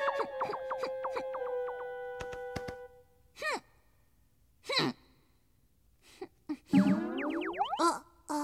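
Cartoon sound effects: a quick run of bouncy, springy notes over held tones for the first three seconds, then two short falling huffs from the sulking penguin character about three and a half and five seconds in, and a rising sliding sweep of tones near the end.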